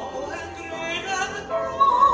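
A contralto singing a classical song with grand piano accompaniment, her voice swelling into a loud held high note near the end.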